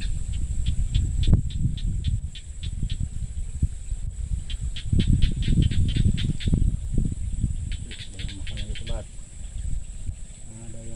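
Insects, likely crickets, chirping in short trains of quick pulses, about four a second, that stop and start again, over a steady low rumble.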